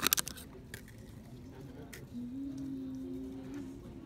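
A few faint clicks, then from about two seconds in a woman's single long hummed 'mm', rising slightly in pitch and lasting about a second and a half.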